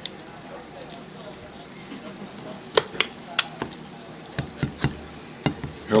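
Carving knife and fork clicking against a ceramic platter while the thigh is cut off a roast turkey at the joint: several sharp clicks in the second half.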